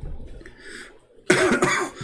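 A man coughing: a sudden, loud cough a little past halfway, with a throaty, voiced tail.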